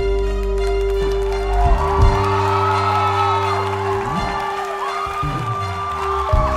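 Instrumental passage of a live band with no singing: bowed violins carry a melody over sustained low notes, with a few sharp hits in the first two seconds.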